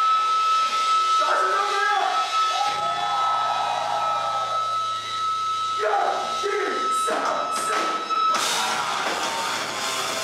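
Live rock band in a club: a sparse passage with a steady high sustained tone and a few vocal shouts, then about eight seconds in the full band crashes in with distorted guitars and drums.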